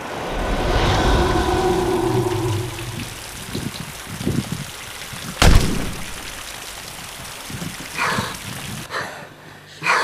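Film sound design: a loud whooshing swell with a low rumble and held tones, then a few soft thumps, then a single sharp bang about five and a half seconds in, which is the loudest sound. Quieter hits follow near the end.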